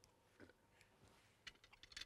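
Near silence, with a few faint, short clicks from a man chewing a mouthful of food.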